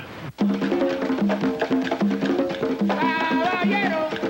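Afro-Cuban rumba played on conga drums (tumbadoras), struck in a repeating pattern of open pitched tones, with the wooden clicks of claves keeping time. A voice starts singing about three seconds in.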